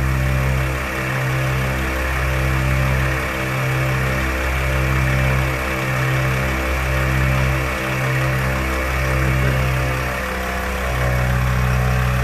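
ARB twin 12-volt air compressor running steadily under load, pumping two 34-inch tires at once up toward 50 psi.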